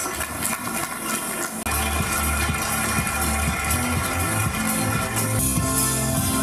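Music with sustained tones; a deep bass line comes in about a second and a half in.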